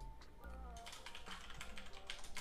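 Computer keyboard typing, a quick run of light keystrokes starting about half a second in, over soft background music.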